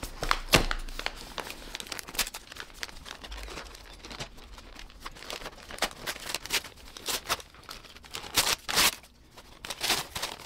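White packing paper crinkling and rustling in irregular crackles as it is handled and unwrapped from around a potted plant, loudest about half a second in and again near the end.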